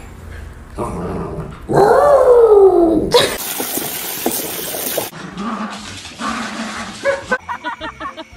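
A dog's drawn-out whine, falling in pitch, the loudest sound, about two seconds in. Then water from a garden hose jetting into a plastic paddling pool, a steady rushing hiss for about two seconds, followed by more splashing water.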